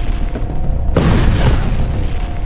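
Airstrike explosions: a heavy boom with a long low rumble, then a second sudden blast about a second in, rumbling on.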